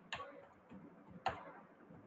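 Computer keyboard keystrokes as words are typed, quiet, with two sharper clicks about a second apart and fainter taps between.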